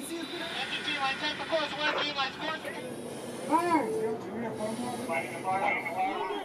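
Crew voices calling out over a steady background hiss.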